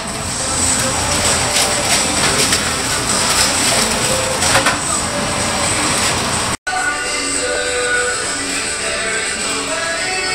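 Steady background noise with a few faint knocks, which cuts out suddenly about two-thirds of the way in. Background guitar music follows.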